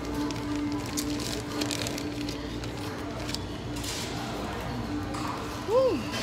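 Restaurant dining-room background: faint music with a steady held note over a low hum, and a few light clicks. Near the end comes one short hum from a voice, rising then falling in pitch.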